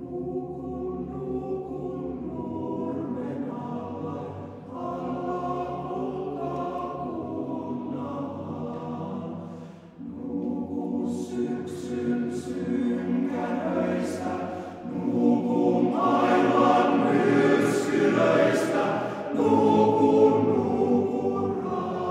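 Male voice choir singing a slow choral song in phrases. The singing breaks off briefly about ten seconds in, then grows louder in the second half.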